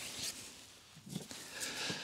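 A quiet pause: faint rustling as a small plastic water filter is picked up, a short throat sound about a second in, and a breathy intake of air near the end.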